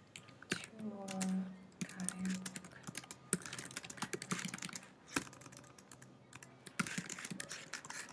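Typing on a computer keyboard: a run of quick, uneven keystrokes, with a short hummed voice about a second in.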